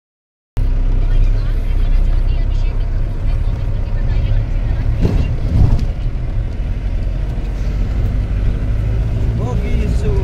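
Steady low rumble of a moving vehicle heard from inside its cabin, engine and road noise together, starting about half a second in. Brief bits of a voice come through about halfway and near the end.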